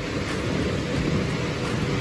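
Steady rumbling noise of an inflatable bounce house's electric air blower running.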